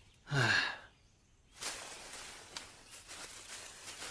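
A young man's short voiced sigh, falling in pitch, about half a second in. From about a second and a half in, a steady rustling noise with a few sharper crackles, as of leaves in the undergrowth.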